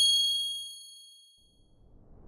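A single bright, bell-like ding from a logo sting's sound effect, struck at the start with several high overtones and ringing away over about a second and a half. A rising whoosh begins near the end.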